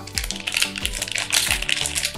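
Crinkling and tearing of a shiny booster pack wrapper as it is opened by hand, in quick irregular crackles, over background music with a steady beat.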